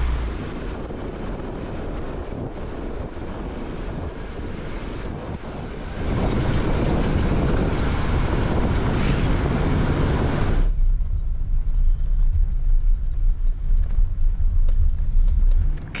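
Jeep Gladiator driving slowly over a rocky dirt trail, heard from outside the truck: a steady rumble of engine and tyre noise. It grows louder about six seconds in, and near eleven seconds the hiss drops away, leaving a low rumble.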